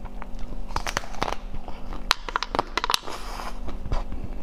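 Bites into the hard green shell of a frozen bar on a stick: a string of sharp cracks and crunches as the frozen coating breaks off in pieces, most of them in the second half.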